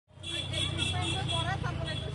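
Busy city street: traffic running steadily with people talking in the background.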